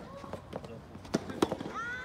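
Sharp pocks of soft tennis rubber balls being hit, several in a row with the loudest pair just past the middle, and a high voice calling out near the end.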